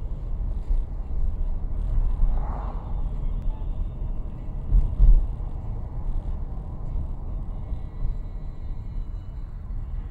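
Steady low rumble of a car's engine and tyres on the road, heard from inside the cabin. A brief knock about five seconds in is the loudest moment.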